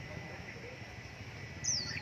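A caged red-whiskered bulbul gives one short chirp sliding down in pitch near the end, over low background noise.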